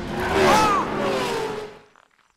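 Race car sound from an animated film: a rush of engine and tyre noise with an engine note that rises and falls, fading out near the end.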